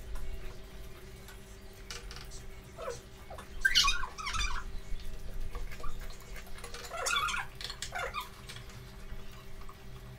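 People slurping and eating momos off spoons, in two short irregular bouts of wet mouth noises, over a steady low hum.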